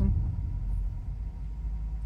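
Steady low rumble of a car heard from inside the cabin: engine and road noise.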